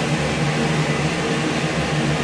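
Kitchen range-hood exhaust fan running with a steady, even hum and whir.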